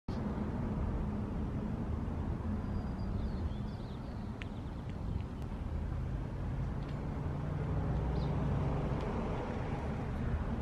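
Low, steady rumble of traffic and car engines, with a hum that swells for a few seconds past the middle and a few faint, short high chirps.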